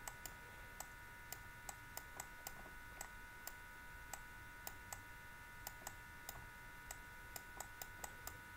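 Faint, irregular clicks, two or three a second, made while text is hand-written on a computer, over a faint steady electrical whine.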